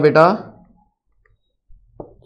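A man's voice speaking one word, then silence, with a faint click near the end.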